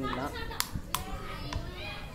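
Children's high voices in the background, with three sharp clicks as a plastic bottle is handled up close.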